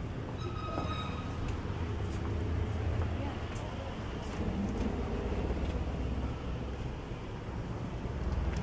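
Steady low rumble of city street traffic, with a brief high-pitched tone in the first second.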